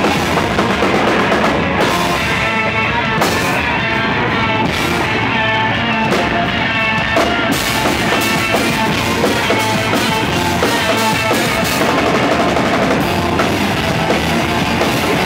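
Electric guitar and drum kit of a two-piece rock band playing loud, full rock live. The cymbals fall away for about five seconds, from around two seconds in, then crash back in.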